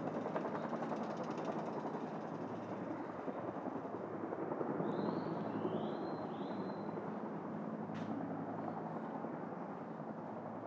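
Steady urban street ambience: a constant rumble of traffic with a low hum. A bird chirps three times about halfway through, and there is a single sharp tick near the end.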